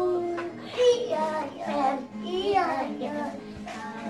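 A child singing a simple colour-naming song over background music.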